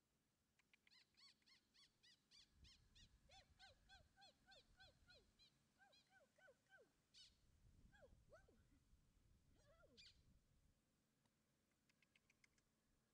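Faint, rapid series of short squeaky chirps, about four a second, for the first several seconds, then a few scattered ones.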